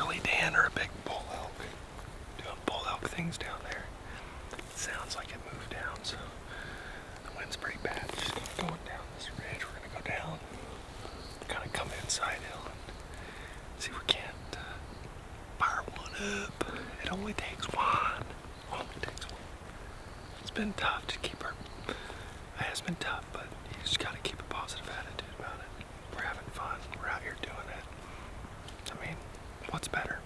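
Men whispering in short, hushed exchanges, with scattered light crackles and snaps of footsteps on dry twigs on the forest floor.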